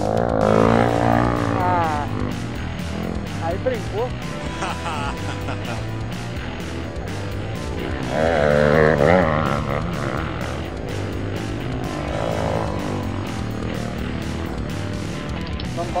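Dirt bike engines running on a steep grassy hillside, with a steady low drone and two louder, wavering surges of revving, one at the start and one about eight seconds in. Music plays along with them.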